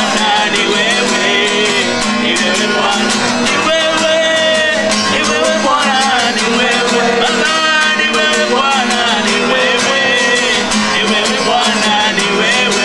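Voices singing a worship song over steady strummed guitar accompaniment.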